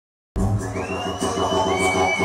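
Dead silence for the first third of a second, then electronic dance music from a live DJ set cuts in abruptly over the venue sound system, with a crowd cheering and a high tone that slides up and then holds.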